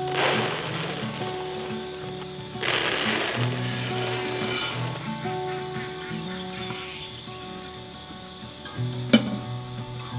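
Background music with a steady tune. Over it, livestock feed is poured from a scoop into a rubber feed pan, a rushing patter at the start and again from about three to five seconds in. A single sharp click comes near the end.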